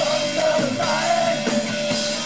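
Live rock band playing: a male vocalist singing a wavering line over electric guitar and a drum kit.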